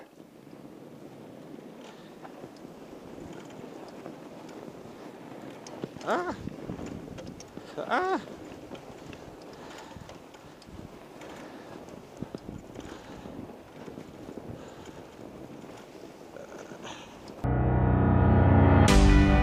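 Fat tires of an ebike crunching and rolling through snow as it is pedaled with the motor assist turned off, with wind on the microphone. A short tone that rises and falls sounds twice, about two seconds apart, midway through. Loud background music starts just before the end.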